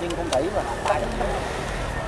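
Indistinct talking in the background over a steady low rumble, with a few brief clicks.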